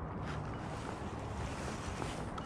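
Steady wind on the microphone over sea water washing against jetty rocks.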